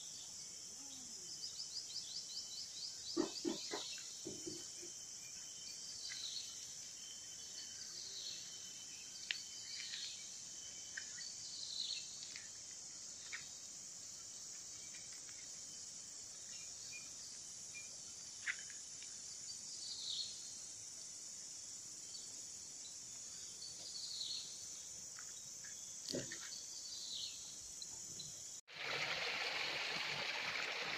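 Steady high-pitched chorus of insects over a rice paddy, with scattered short bird chirps and a quick run of calls a couple of seconds in. Near the end it cuts to water trickling from a small pipe into an irrigation ditch.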